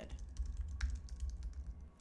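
Typing on a computer keyboard: a quick, irregular run of key clicks over a low room rumble.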